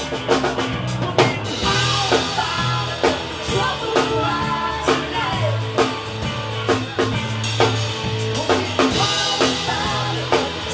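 Rock band playing live: a drum kit drives a steady beat, with strong hits about once a second, under electric guitars and bass.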